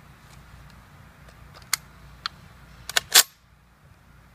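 Sharp metallic clicks from handling a Saiga-12 semi-automatic 12-gauge shotgun as its detachable magazine is seated and the action readied. There are single clicks a little under two seconds in and just after two seconds, then a quick cluster about three seconds in. The cluster ends in the loudest clack with a brief ring, like the bolt slamming forward.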